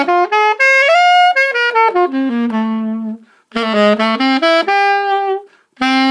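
A Yamaha-built Vito student-model alto saxophone played in quick phrases. The first phrase runs up to a held high note and back down to a held low note. A short breath about three seconds in is followed by a second phrase.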